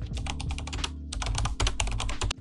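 Computer keyboard typing: a fast run of key clicks with a brief pause about a second in.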